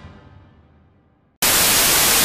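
Music fading away, then a loud burst of television static hiss that starts suddenly about three-quarters of the way in.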